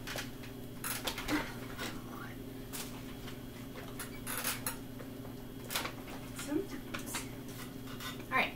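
Scattered short clicks, knocks and rustles of a person straining to pull herself up from the floor into a wheelchair, over a steady low hum.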